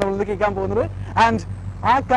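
A man talking to camera, over a low steady hum.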